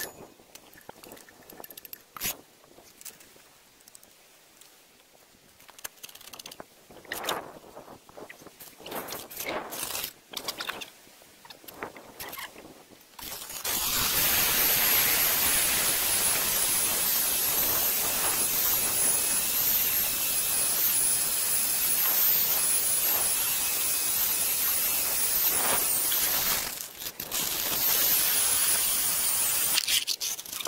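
Clicks and knocks of the core drill rig being handled, then, about halfway through, the electric motor of a Husqvarna DM220 diamond core drill starts and runs steadily, boring into the stone wall with a high whine that wavers slightly. Near the end the sound briefly drops before the drill picks up again.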